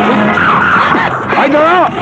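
A person's voice calling out, with a drawn-out cry that rises and then falls in pitch about a second and a half in.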